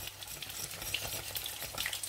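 Fish fingers frying in a pan of oil, a faint steady sizzle with scattered small clicks, together with a wire whisk stirring mashed potato in a steel pot.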